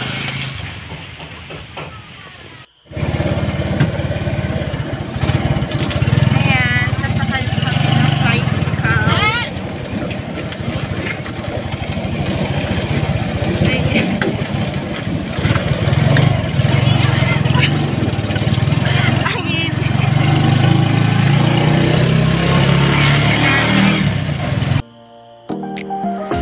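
Motorcycle-tricycle engine running steadily after a cut about three seconds in, heard from inside the sidecar with road and wind noise; it cuts off shortly before the end.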